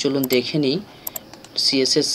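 A man talking, with light computer clicks behind his voice in two quick pairs, one near the start and one about a second in.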